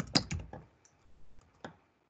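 Computer keyboard keystrokes: a quick run of clicks at the start, then a few scattered single key presses as a word is typed and letters are deleted.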